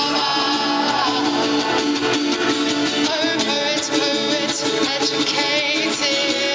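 A live band playing a song with voices singing over it.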